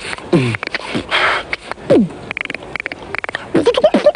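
Human beatboxing into a close microphone: deep falling kick-drum sounds, hissing breath snares and a quick run of mouth clicks, with a wavering vocal tone coming in near the end.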